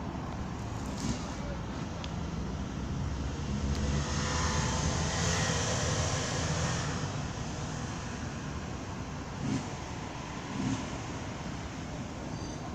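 Outdoor background noise with a road vehicle passing, swelling and then fading over a few seconds in the middle. Two short bumps come near the end.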